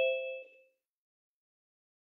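A two-note chime falling in pitch, the second note lower than the first, ringing and fading away within about the first second.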